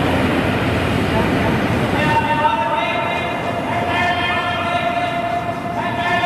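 Curling stone sliding down the pebbled ice while two sweepers brush hard in front of it. From about two seconds in, a steady, pitched tone with several overtones sounds over the scrubbing.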